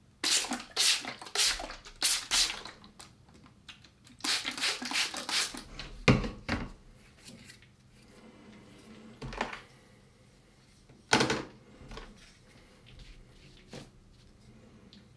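Trigger spray bottle misting water onto watercolour paper in quick squirts, a run of four in the first few seconds and another quick run about four to five seconds in. A sharp knock follows about six seconds in as the bottle is set down, with two more brief noises later.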